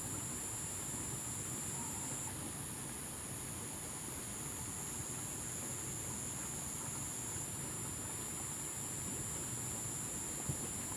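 Steady outdoor background: a constant high-pitched hiss over a low hum, with no distinct events.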